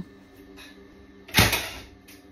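Nail gun firing once, a single sharp shot about one and a half seconds in, driving a nail through a wooden peg rail board into a wall stud.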